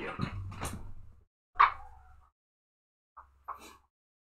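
Scuffing and handling noises of a person bending down to pick up a dropped paintbrush, with one sharp, loud sound about a second and a half in and a few faint small knocks near the end.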